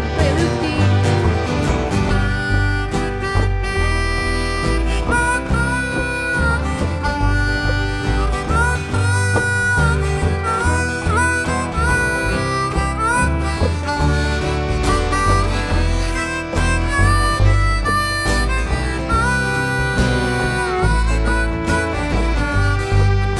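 Live country band playing an instrumental break with no singing: a lead instrument plays held notes with quick downward bends over guitar and a steady bass line.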